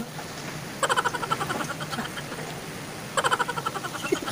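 A woman laughing in two short, pulsing bursts, about a second in and again near the end.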